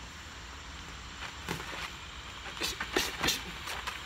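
Gloved boxers sparring: a run of about eight short, sharp sounds of punches and quick breaths, bunched in the second half.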